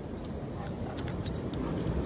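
Metal dog-collar tags jingling in short irregular clinks as basset hounds run up, over a steady low rushing noise.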